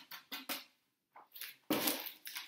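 A metal box grater scraping over a block of chocolate: several quick scratchy strokes, a short pause, then a louder scrape near the end.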